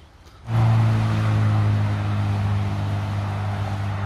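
A steady, low mechanical hum over a hiss, cutting in suddenly about half a second in and running on evenly.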